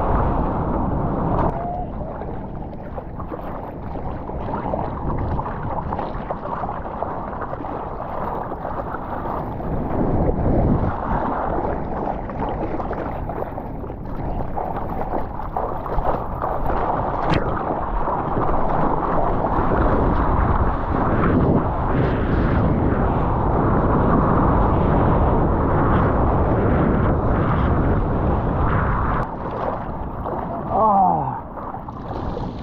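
Water sloshing and splashing as a surfer paddles a surfboard, arms stroking through the water, with wind buffeting the microphone; the rush grows louder in the second half.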